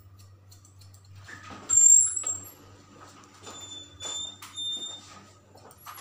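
Barber's scissors snipping hair over a comb, a run of short crisp snips. A loud high-pitched squeak about two seconds in, and fainter squeaks a couple of seconds later, cut across the snipping.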